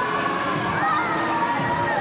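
Children shouting on an indoor amusement ride over a crowd's steady hubbub, with one long high call about a second in.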